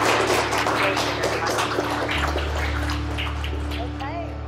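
Audience applauding, a dense patter of many hands clapping that thins out toward the end.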